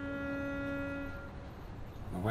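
A held note in the music score, a steady pitched tone with overtones that fades out a little over a second in, leaving a low background hum.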